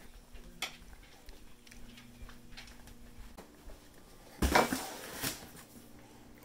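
A cardboard shipping box set down on a tiled counter about four and a half seconds in: a sudden thump, then about a second of cardboard scraping and rustling, ending in a second knock.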